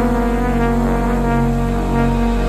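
Dance music holding a long, low sustained chord over a deep bass drone, with no beat.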